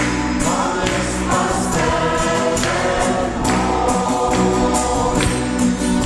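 A congregation singing a worship song together, clapping their hands on the beat.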